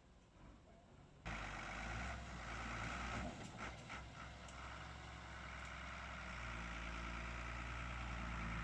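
A motor vehicle engine idling steadily, a low hum that cuts in louder just over a second in, with a few faint clicks partway through.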